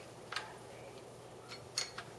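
A few light, separate clicks of a stainless steel pork-puller shaft being fitted into a cordless drill's chuck; the drill is not running.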